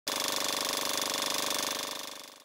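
Film projector running: a rapid, even mechanical clatter that starts abruptly and holds steady.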